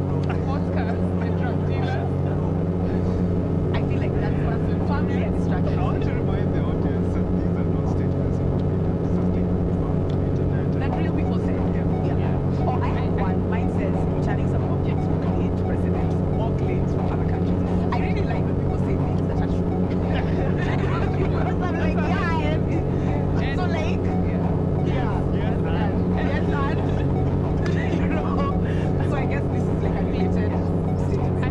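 Live electronic synthesizer drone: a dense, steady layer of low tones with one tone wobbling slowly up and down about every two seconds. Short, voice-like flickering fragments play over it.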